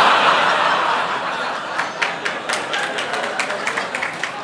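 A large audience laughing, loudest at the start and slowly dying away, with a few sharp claps in the second half.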